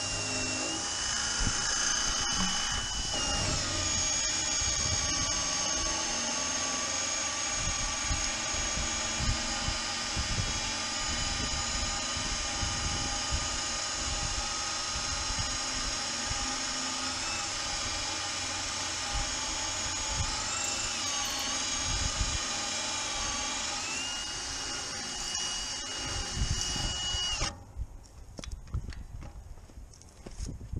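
Cordless drill held in a magnetic drill base, running steadily as its bit bores into the steel wall of a gun safe, the whine dipping in pitch a few times as the bit loads up. The drill stops suddenly near the end, followed by handling clatter.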